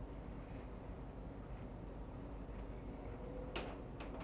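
Quiet room noise with a steady low hum, and one sharp click near the end.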